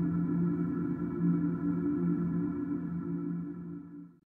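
Ambient background music: a sustained low drone of steady held tones, fading out near the end.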